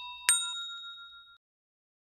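A single bright chime 'ding' sound effect, struck once about a quarter-second in with a sharp attack over the fading tail of an earlier chime note, ringing out and dying away within about a second.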